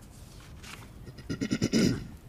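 A person clearing their throat: a rough, rattling sound lasting under a second in the second half.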